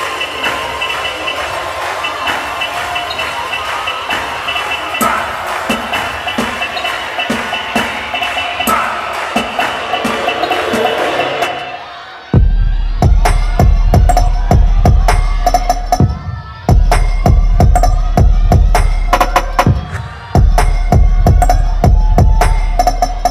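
An audience cheering and shouting over music for about twelve seconds, then a loud dance track with a heavy bass and sharp beat hits cuts in suddenly, with two short drops in the beat later on.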